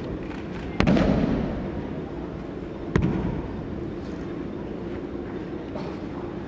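Two sharp slaps of a thrown aikido partner's breakfall on the tatami mat, about two seconds apart, the first louder and ringing on briefly in the large hall.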